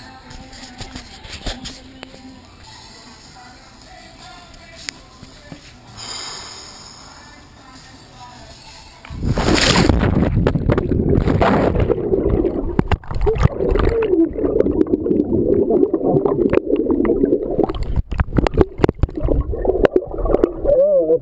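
Fairly quiet pool-side sound at first; then, about nine seconds in, a sudden loud plunge of the camera into the pool, followed by continuous loud, muffled underwater gurgling and rumbling as heard through the submerged waterproof camera's microphone.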